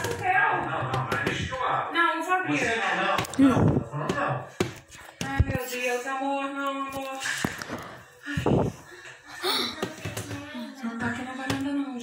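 Mostly voices talking, with a couple of dull thumps about three and a half and eight and a half seconds in.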